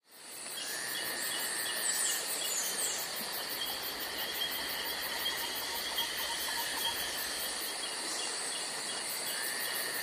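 Steady insect chirring with a short chirp repeating about twice a second, fading in just after a sudden cut at the start.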